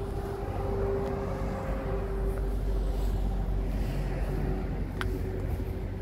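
Citroën C4 Cactus engine idling, a steady low hum with a faint held whine. A short sharp click about five seconds in.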